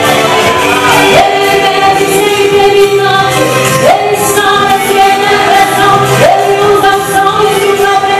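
Gospel duet: a man and a woman singing through handheld microphones and a PA over an amplified accompaniment. They hold long notes, several of which begin with an upward slide.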